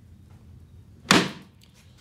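Hinged plywood seat lid of a dinette storage box dropping shut onto the frame: a single loud wooden clap about a second in that dies away quickly.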